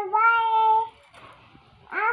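A little girl's high voice holding a drawn-out sung note for just under a second, then a short rising vocal sound near the end.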